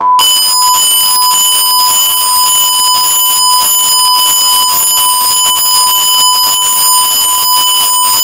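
A single very loud, distorted electronic beep tone, high-pitched and held steady without a break, cutting in abruptly where the narration stops.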